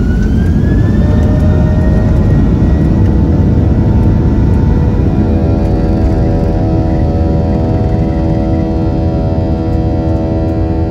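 Boeing 737-800's CFM56-7B turbofan engines at takeoff thrust during the takeoff roll: a rising whine that levels off about a second in, over a loud, steady rumble. About halfway through, a set of steady humming tones joins the rumble.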